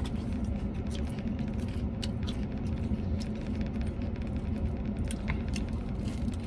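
Steady low rumble of an idling car heard inside its cabin, with a few faint clicks from handling and eating food.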